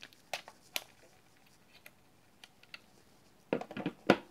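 Light clicks and taps of a hard plastic drone radio controller being handled: a few sparse clicks, then a quick cluster of knocks near the end as it is set down.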